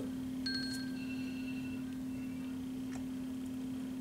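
Steady low hum with faint, thin high-pitched tones that come in about half a second in and fade out after about two seconds, and a faint click near the end.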